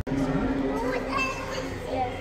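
Indistinct voices of children and other visitors talking in a large indoor exhibition hall.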